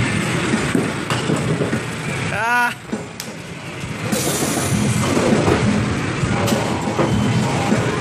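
Busy arcade din: music over crowd chatter. About two and a half seconds in, a short warbling electronic tone sounds, like a game sound effect.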